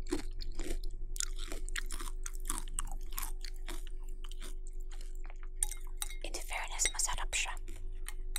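Close-miked chewing of chocolate cornflakes in milk: a run of crisp, wet crunches that come thicker and louder near the end.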